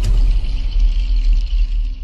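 Music of a TV channel ident sting: a deep hit at the start, then a low rumble under a shimmering high tone that fades away.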